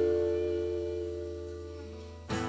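Electric guitar holding two notes together, left to ring and slowly fade away.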